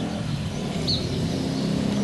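A car driving slowly past along the street, giving steady engine and tyre noise, with one short bird chirp about a second in.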